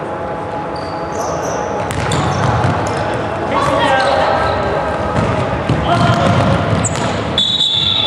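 Girls' basketball game in a reverberant sports hall: voices calling out over the ball bouncing and brief high squeaks of shoes on the hardwood court. Near the end a referee's whistle sounds for about a second.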